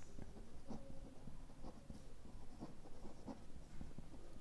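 Pen writing by hand on a paper worksheet: faint, scratchy strokes and small ticks as a couple of words are written out.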